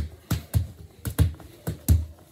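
Soccer ball struck repeatedly by bare feet in quick touches. There are about three to four dull thumps a second.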